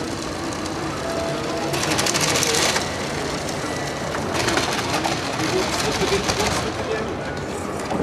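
A small battery-powered competition robot running its course, its geared electric motors whirring and rattling in two spells, a short one about two seconds in and a longer one from about the middle, over a steady murmur of onlookers.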